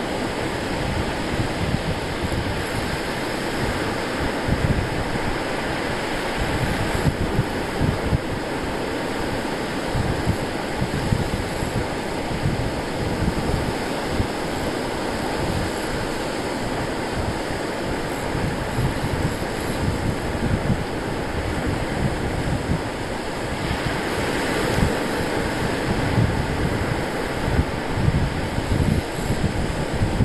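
Wind buffeting the microphone in gusts over the steady wash of surf breaking on the beach.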